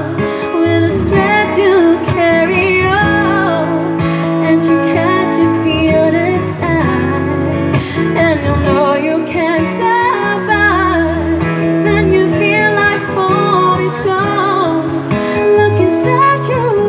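A woman singing into a microphone, accompanied by an acoustic guitar, strummed and plucked, in a live amplified acoustic duo performance.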